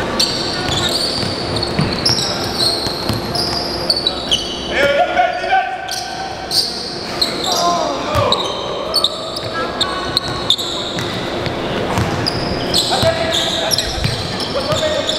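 Basketball dribbled on a hardwood gym floor, with sneakers giving short high squeaks as players cut and run, in the echo of a large indoor hall; players' voices call out now and then.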